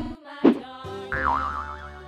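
Children's background music with added cartoon sound effects: a short, sharp falling swoosh about half a second in, then a wobbling boing tone that wavers and slowly falls.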